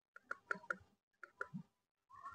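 Keypad buttons on a handheld satellite finder meter being pressed: a quick run of faint plastic clicks, then a few more about a second later.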